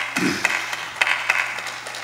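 Scattered sharp taps and clicks at an irregular pace of several a second, with a brief low voice just after the start.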